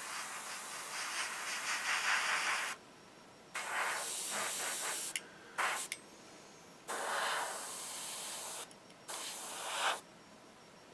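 Airbrush spraying paint: a hiss of air and paint that starts and stops about five times, in bursts of a fraction of a second to nearly three seconds, as the trigger is pressed and released.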